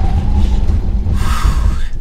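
Tesla Model 3 Performance heard from inside the cabin during a hard stop from about 75 mph: heavy road and tyre rumble, with a brief hiss rising about a second in and dying away near the end as the car slows.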